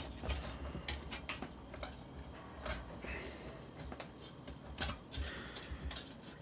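Faint, irregular clicks and taps of a CPU cooler's fan clips and plastic fan frame being worked by hand as they are pried off the heatsink.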